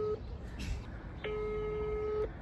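Telephone ringback tone heard through a phone's speaker as an outgoing call rings: a steady low beep that stops just after the start, then sounds again a little past halfway.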